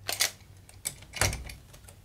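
A few sharp plastic clicks and knocks as a battery-powered toy train locomotive is handled and set down on plastic track, with a duller knock a little past halfway.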